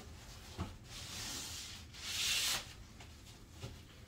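Wooden divider panel being slid down between slats inside a fabric storage ottoman, rubbing against the box: a light knock about half a second in, then a scraping rub that swells just after two seconds and fades, with another faint knock near the end.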